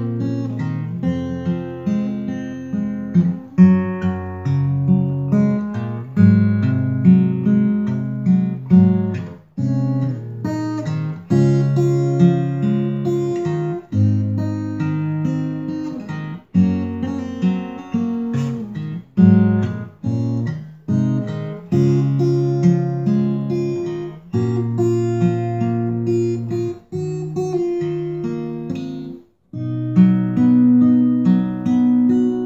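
Solo steel-string acoustic guitar, picked chords over a moving bass line, with a short break just before the end.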